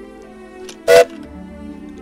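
Soft background music, cut by a single short, loud comic hit about a second in: a cartoon 'bonk' sound effect.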